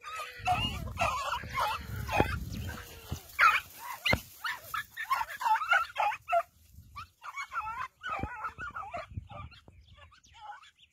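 Greyhound hunting dogs yelping and whining in short, high, repeated cries during a chase, with a low rumble on the microphone in the first three seconds.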